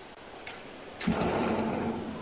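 A house door closing, heard through a Ring video doorbell's microphone: a sudden thump about a second in that trails off over the next second.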